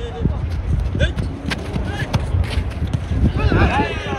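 Players shouting to each other during a soccer match, with short calls scattered through and a cluster of shouts near the end, over a steady low rumble of wind on the microphone. A couple of sharp knocks about a second in.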